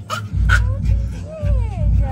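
A dog whining: several drawn-out whines, each falling in pitch.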